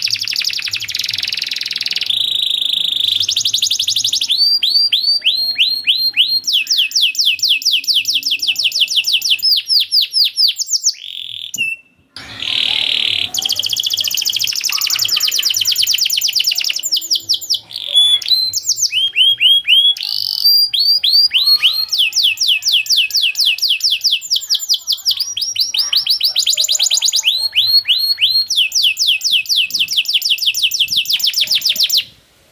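Domestic canary singing a long continuous song of fast trills: rapid runs of repeated downward-sliding notes, changing speed and pitch from one phrase to the next, with a brief break about twelve seconds in.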